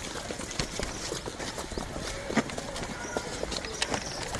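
Footsteps of a group of people walking briskly over grass and earth: irregular steps and scuffs close to the microphone, with indistinct voices in the background.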